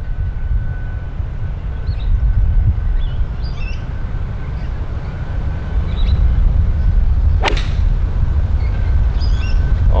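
A golf club striking a ball off the fairway turf: one sharp crack about seven and a half seconds in.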